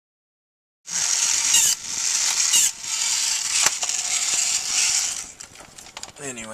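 Robot toy's small motor-driven gear mechanism grinding and straining as it tries to close the head, which is held back by the heavier 3D-printed replacement parts. The sound cuts in suddenly about a second in, runs steadily with a couple of sharp clicks, and drops to scattered clicks near the end.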